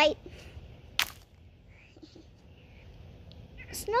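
A short, sharp noise about a second in and another just before the end, over a quiet outdoor background.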